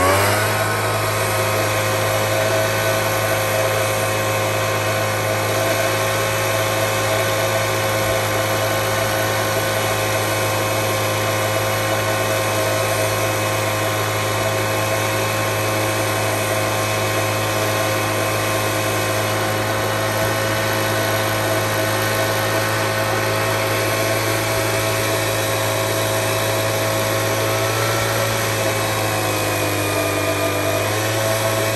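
The two-stroke engine of a backpack mist blower runs steadily at high speed, blasting fish-feed pellets out over a pond through its nozzle. Its pitch sags briefly near the end.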